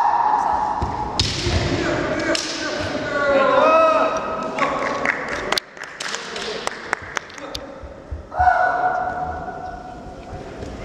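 Kendo sparring: kiai shouts and bamboo shinai clacking together, with thuds of stamping feet on the hall floor. A shout bends in pitch a few seconds in, a run of sharp clacks comes around the middle, and one long held shout comes near the end.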